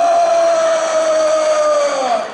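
A man's long, held scream into a handheld microphone, amplified over the hall's sound system, sliding slowly lower in pitch: an acted death scream reenacting his character's death.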